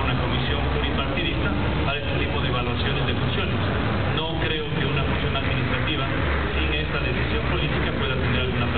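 A man speaking into a microphone over a steady low hum.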